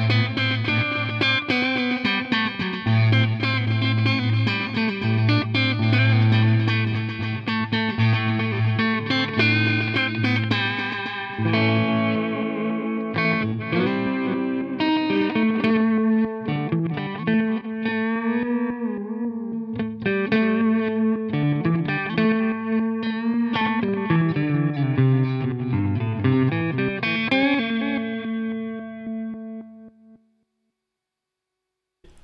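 Electric guitar played through a NUX Time Force digital delay pedal, demonstrating its delay types: a riff with multi-head delay repeats, then, after a change about eleven seconds in, phrases through the reverse delay setting. The sound fades out at the very end.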